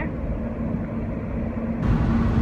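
Steady road and engine rumble inside a moving car's cabin, with a constant low hum.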